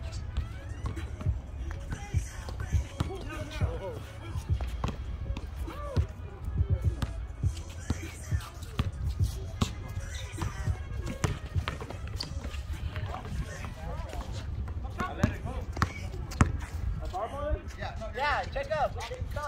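A basketball bouncing on an outdoor concrete court, irregular thuds throughout, with players' voices in the background.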